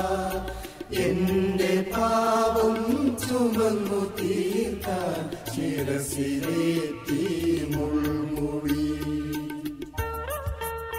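Mixed choir of men and women singing a Malayalam Christian song of praise, accompanied by an electronic keyboard with a steady low bass line.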